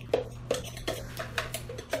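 Repeated short knocks and clicks of a spoon against a plastic Vitamix blender container, about six in two seconds, as thick blended food scraps are scraped and tapped out into a bowl.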